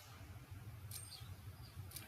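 Quiet room tone: a steady faint low hum, with a faint click and a short high tone about a second in.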